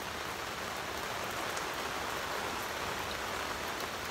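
Steady rain falling, heard from under a tent canopy.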